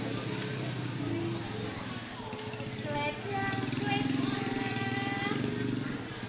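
A voice on stage: speaking at first, then from about two seconds in a sung line with long held notes, over gamelan accompaniment.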